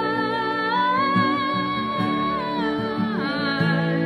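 A young woman sings a long held note that steps up in pitch and then slides down, over a Taylor acoustic guitar strummed beneath it.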